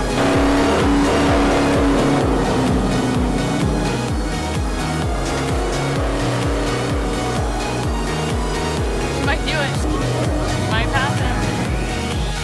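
A race car's engine running at speed on the track, mixed under electronic music with a steady heavy beat. Near the end come some wavering high-pitched sounds.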